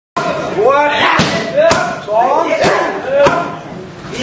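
Punches and kicks landing on Muay Thai pads: about four sharp smacks, with short shouted calls rising in pitch between the strikes.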